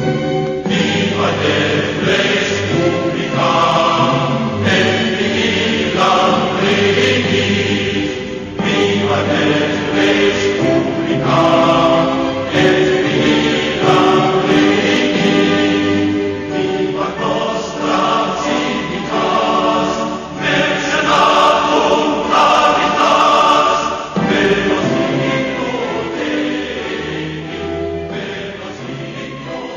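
Choral music: a choir singing slow, sustained phrases a couple of seconds long.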